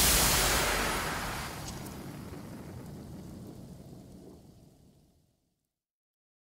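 The tail of the channel's outro music sting: a rumbling, noise-like whoosh that fades out steadily and is gone about four and a half seconds in.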